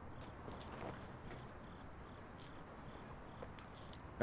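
Faint crickets chirping in a steady pulsing rhythm, several chirps a second, with a few soft ticks.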